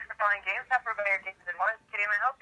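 A voice on a phone call heard through a smartphone's speaker, thin and narrow in tone like telephone speech.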